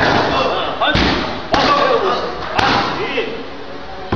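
Kicks and knees landing on Thai pads held by a trainer: three sharp slaps, about a second in, half a second later and another second after that, with short vocal calls in between.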